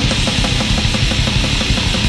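Black/death metal song with distorted guitars and drum kit, played loud, fast and dense without a break; no vocals.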